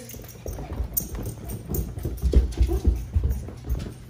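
Bare feet climbing carpeted stairs, with a quick run of dull thumps about three or four a second.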